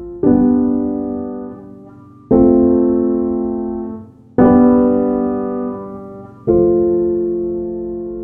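Background music: slow piano chords, each struck and left to ring and fade away, one about every two seconds, four in all.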